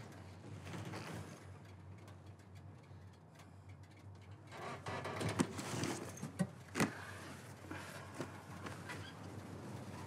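Quiet tank interior with a steady low rumble. Between about five and seven seconds in there is soft rustling with a few sharp clicks and knocks as a padded tank crew helmet is pulled off.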